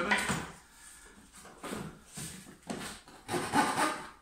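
Coping saw cutting the scribe profile into a timber skirting board, in a handful of short, uneven bursts of strokes with pauses between them.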